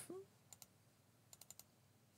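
A few faint computer keyboard and mouse clicks: two about half a second in, then four in quick succession around a second and a half.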